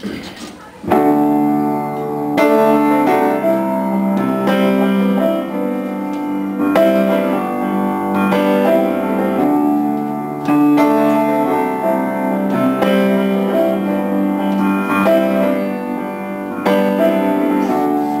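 Solo piano introduction to a song: sustained chords, a new one struck about every two seconds, starting about a second in.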